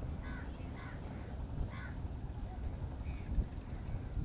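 A bird calling in short harsh notes, three in quick succession in the first two seconds and a fainter one later, over a steady low rumble.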